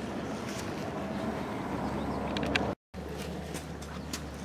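Steady low background hum and hiss with a few faint clicks, the sound dropping out for a moment about three quarters of the way through.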